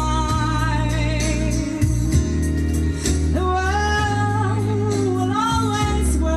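A woman singing a song live, holding long notes with vibrato over instrumental accompaniment with a steady bass line.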